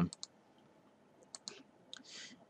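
A few faint computer mouse clicks: a pair at the start, a couple more about a second and a half in, and one near the end.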